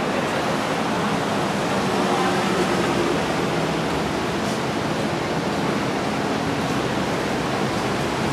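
Steady, even noise of street traffic, with a faint engine hum underneath.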